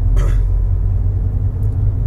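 Steady low rumble of a car in motion, heard inside the cabin: engine and road noise.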